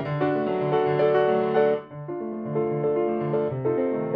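Solo piano playing classical music, with a repeated low bass note under a melody. The sound drops briefly about two seconds in, then the playing carries on.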